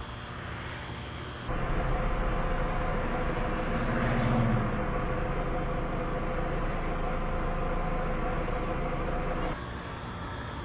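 A steady machine-like whirring noise with a faint hum starts suddenly about a second and a half in and cuts off suddenly near the end.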